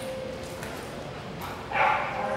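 A young Australian Labradoodle barks once, short and loud, near the end, during a game of tug.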